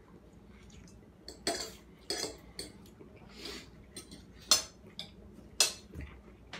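Metal forks clinking and scraping against dinner plates of noodles: a scatter of short, sharp clinks, the two loudest near the end.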